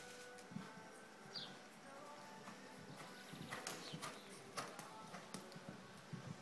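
Faint hoofbeats of a show-jumping horse cantering on a sand arena, with a run of sharper knocks in the second half. Faint music plays in the background.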